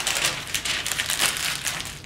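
Paper being crumpled and rustled by hand, a steady crackly rustle.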